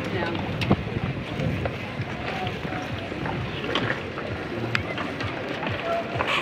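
Wind buffeting the microphone and scattered knocks and rattles from riding a bicycle with the camera, with indistinct voices in the background.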